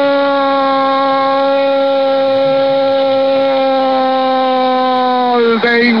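A male football radio commentator's drawn-out goal cry, "gol" held as one long steady note for nearly six seconds, dipping in pitch as it ends, for a late winning goal.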